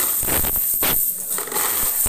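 A heap of loose coins scraping and jingling as a broom sweeps them across a tiled floor into a plastic dustpan, in several quick sweeping strokes.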